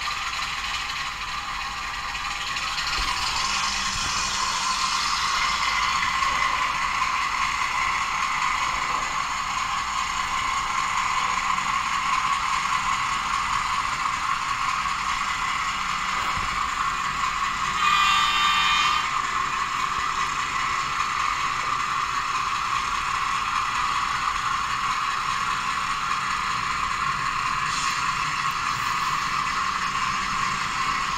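HO-scale 48 class diesel model locomotive running forward under DCC sound control: a steady mechanical running sound from the model and its small onboard sound speaker. About two thirds of the way through comes a short, higher tone lasting about a second.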